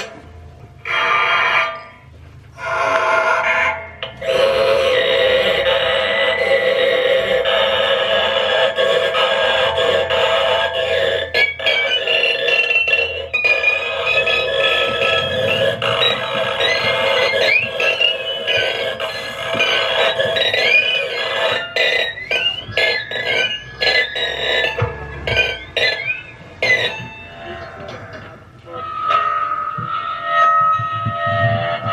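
Live experimental noise music of amplified found objects and electronics: a dense sustained drone, broken by short gaps at first, joined after about ten seconds by high sliding, warbling tones and then by a flurry of sharp clicks.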